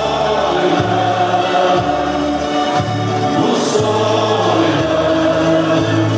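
Portuguese folk dance music with group singing, playing continuously with a steady bass line that changes note about once a second.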